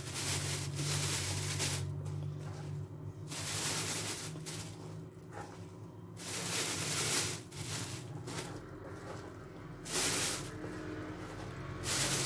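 Thin plastic bag rustling and crinkling in several bursts as handfuls of chopped green peppers are scooped into it, over a steady low hum.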